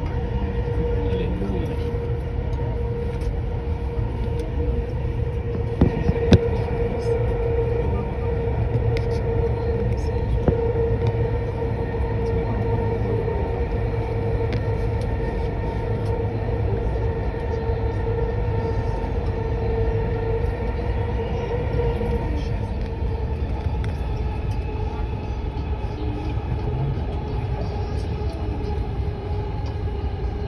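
Dubai Metro train running, heard from inside the carriage: a steady low rumble with a constant whine that weakens about two-thirds of the way through. A couple of sharp knocks about six seconds in.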